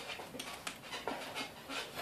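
Faint rubbing and a few light clicks as a solid rubber tire is worked onto a wheelchair rim with a screwdriver.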